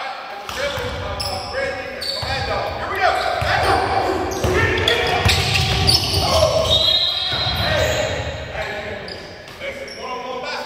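Basketball dribbled on a hardwood gym floor during a drill, with several players' voices calling out over it, all echoing in a large gym hall.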